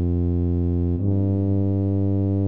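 Computer-rendered tuba from MuseScore score playback, holding low, steady notes in a slow single-line melody. The pitch steps up to the next note about a second in.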